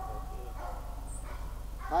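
A hunting dog baying in long, held notes, a drawn-out bawl of about a second followed by a shorter one.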